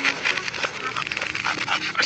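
A cartoon soundtrack played in reverse: a quick run of short ticks, then brief animal-like creature calls, all running backwards.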